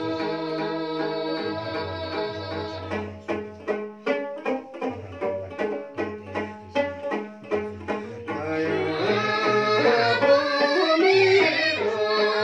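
Women singing a traditional Dolpo song together, accompanied by a strummed long-necked lute. The voices drop out about three seconds in and the lute strums a rhythmic passage alone for about five seconds, then the singing comes back in.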